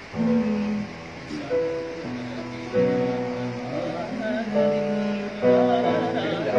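Electronic keyboard playing a slow run of held chords, a new chord struck roughly every second.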